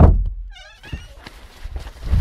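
A heavy thump at the start as one man shoves another during a scuffle, followed by a short wavering high-pitched cry. Rustling of a waterproof jacket being grabbed, with scattered small knocks, follows.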